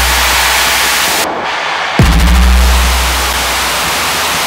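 Electronic music from a Eurorack modular synthesizer played live: a dense wash of white noise, with one deep bass hit about two seconds in that drops sharply in pitch and carries on as a low bass drone. The high end of the noise cuts out briefly just before the hit.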